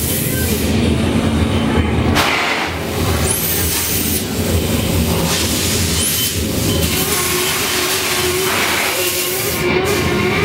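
Dark-ride spaceship-scene sound effects: a steady low mechanical rumble broken by short hissing bursts like steam jets, about two, six and nine seconds in.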